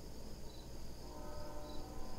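Low background noise during a pause: a steady low hum and high hiss, with a few faint, brief high-pitched chirps. A faint pitched tone comes in about halfway through.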